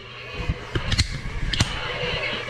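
Remote-controlled plastic toy battle robots knocking against each other, a handful of sharp plastic clacks and knocks. The loudest come about a second in and again a little after halfway.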